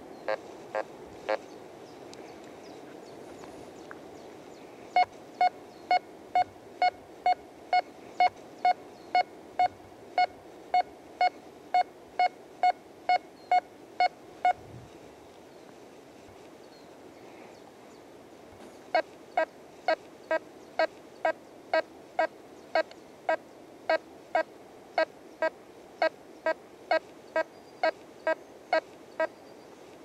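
Nokta Force metal detector in three-tone discrimination mode, giving short repeated target beeps about twice a second as the coil is swept back and forth over buried metal. A run of higher beeps starts about five seconds in and stops near the middle. After a pause a second run begins and goes on almost to the end, slightly lower and with a deeper tone beneath it. In this mode the detector's different tones mark ferrous metal, non-ferrous metal and gold.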